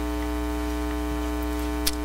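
Steady electrical mains hum in the audio, an even buzz, with one faint click near the end.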